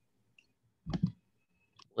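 Near silence over a noise-suppressed video-call line, broken by faint clicks and one short, sharp sound about a second in.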